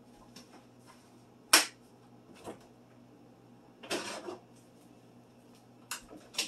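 A few sharp knocks and clicks of things being handled and set down on a kitchen counter, the loudest about one and a half seconds in, with a brief scraping rustle about four seconds in, over a faint steady hum.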